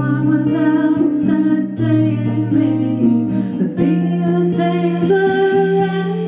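A woman singing live, holding long notes, to her own acoustic guitar accompaniment.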